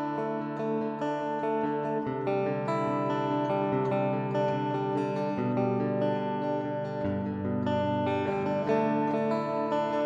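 Electric slide guitar through a gold foil pickup playing an instrumental, with long ringing notes and chords that change every second or two.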